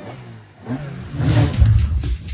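Radio show jingle between segments: a swelling whoosh builds over the first second and a half, then a heavy bass beat of electronic music kicks in.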